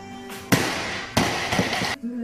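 A weightlifter's feet slapping the platform as he drops under a 190 kg barbell and catches the snatch: two sharp impacts about two-thirds of a second apart, over music playing in the gym.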